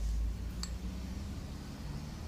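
Quiet handling sounds of a metal spoon scooping breadcrumbs from a glass bowl, with one light click of the spoon against the glass about half a second in, over a steady low hum.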